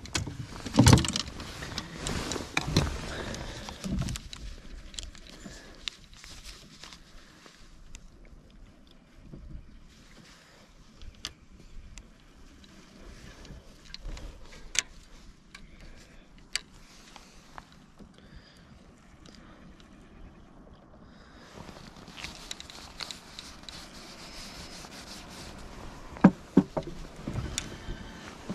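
Handling of fishing rods and spinning reels on a boat deck: a few knocks in the first seconds, then scattered sharp clicks over faint background noise.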